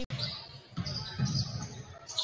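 A basketball being dribbled on a hardwood gym floor, a few dull bounces, against the faint hubbub of the gym.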